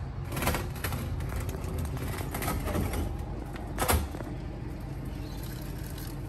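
Plastic wheelie bin being shifted across concrete, its wheels and body scraping in a few short bursts, with one sharper knock about four seconds in. A steady low rumble runs underneath.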